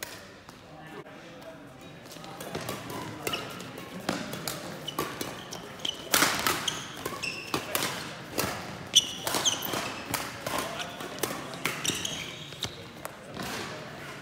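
Badminton doubles rally in a sports hall: a quick run of sharp racket-on-shuttlecock hits and footfalls, with short shoe squeaks on the court floor, echoing in the hall.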